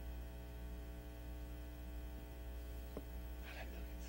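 Steady electrical mains hum from the microphone and sound system: a low buzz with a ladder of even overtones, unchanging throughout. A faint click comes about three seconds in.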